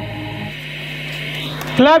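Recorded song playing over a PA loudspeaker cuts off about half a second in, leaving a steady low hum, then a voice close by shouts "love…" loudly near the end.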